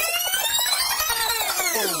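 A synthesized musical tone with many overtones, sweeping smoothly up in pitch and back down. The pitch peaks about a second in and falls away steeply near the end.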